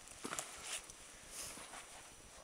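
A few quiet, short crunching footsteps in snow.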